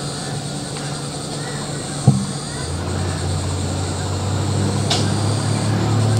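Outboard motors on inflatable rescue boats running, a steady engine drone. A sharp knock comes about two seconds in, and a lower engine hum then builds and grows louder toward the end.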